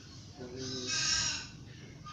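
A single bird call, about a second long, with a bright high edge.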